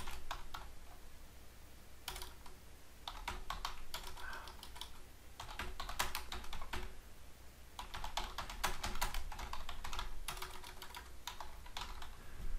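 Typing on a computer keyboard in bursts of quick keystrokes, with short pauses between the bursts.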